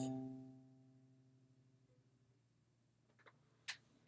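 A single steel-string acoustic guitar note, fretted at the 8th fret in a pentatonic scale run, ringing out and fading away over about two seconds. Then near silence, with a faint click or two near the end.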